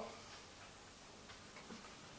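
Near silence: low room tone with a few faint ticks about a second and a half in.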